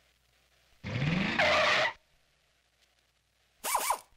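Car sound effect: an engine revving up with a squeal of tyres for about a second, then a second short tyre screech with a falling pitch near the end.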